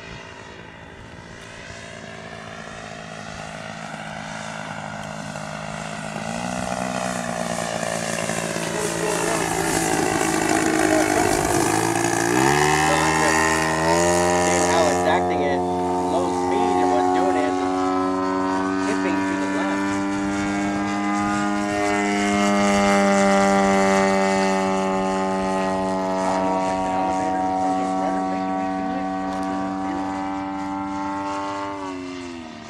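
Single gas engine and propeller of a large radio-controlled Extra 300L aerobatic plane (111cc) flying overhead. Its drone grows louder over the first ten seconds or so. About twelve seconds in, the pitch climbs quickly, then holds high and steady.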